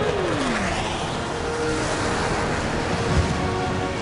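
Jet flyover passing, the engine pitch falling as the planes go by, over background music. A single low thump comes near the end.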